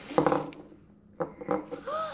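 Foil blind-bag wrapper rustling as it is handled and opened to pull out a small figure, with short child vocal sounds about a second in and a rising-then-falling vocal sound near the end.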